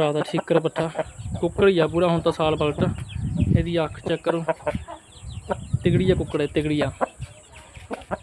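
Chickens clucking in quick, repeated short calls.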